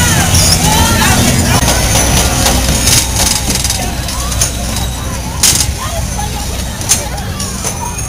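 Fairground bumper car ride: a steady low hum for the first few seconds, then a few sharp knocks, the loudest about five and a half seconds in, over children's voices and crowd chatter.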